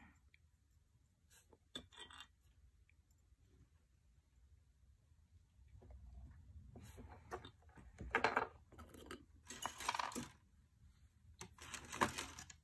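Faint, light clicks and clinks of small metal pieces as a brush dabs borax flux onto silver rings on a ceramic honeycomb soldering board, with a few short rustling handling sounds in the second half.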